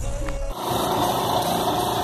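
A handheld gravity-feed paint spray gun hissing steadily as it sprays, with an air compressor running beneath it; the hiss starts about half a second in, after a short low rumble.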